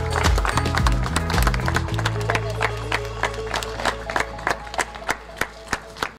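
A small group of people applauding by hand over background music. The clapping thins to a few scattered claps as the music fades out near the end.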